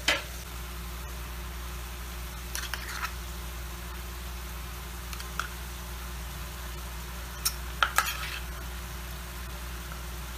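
Prawns sizzling softly in a frying pan, with a few light clicks of a spoon against the pan as dollops of masala gravy paste go in, about three seconds in and again near eight seconds.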